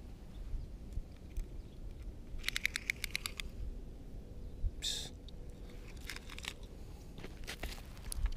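A tape measure being pulled out: a run of rapid clicks lasting about a second, then a short rasp about five seconds in. Scattered crunches on gravel and a low steady rumble run underneath.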